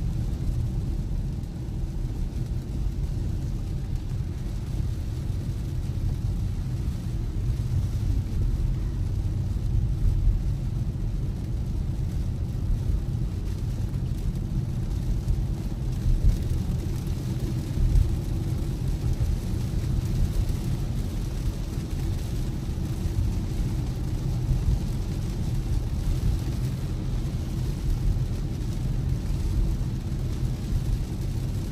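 Cabin sound of a Tesla electric car driving in heavy rain: a steady low rumble of tyres on the wet road, with rain on the car and a few louder bumps now and then.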